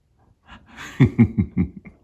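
A man chuckling: a breath, then a short run of four or five breathy laughs falling in pitch, about a second in.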